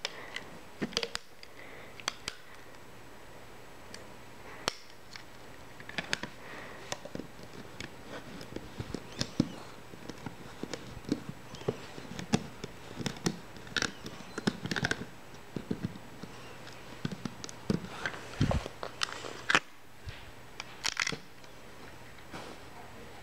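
Hands working stretched rubber bands off a clear plastic Rainbow Loom with a plastic hook, giving scattered light clicks, taps and small rubbery scrapes at irregular intervals. A faint steady low hum sits underneath.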